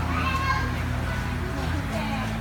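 Children's voices and people talking in a room, over a low steady hum.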